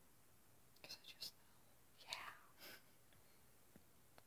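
Near silence with faint whispering: a couple of short breathy murmurs about a second in and again about two seconds in.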